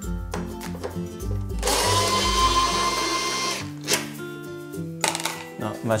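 Electric screwdriver motor running for about two seconds, backing out a screw, with a steady whine. A couple of short clicks follow.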